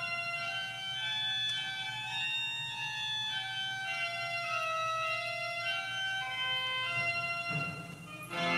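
Church organ playing a slow passage of held notes and chords that change about every second, with a brief lull near the end.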